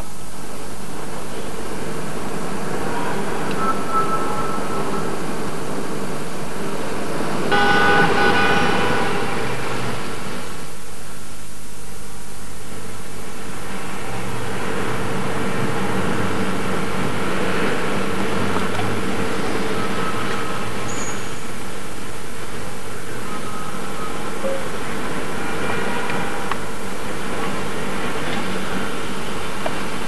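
City street traffic: a steady hum of passing vehicles, with a car horn sounding for about a second and a half about eight seconds in.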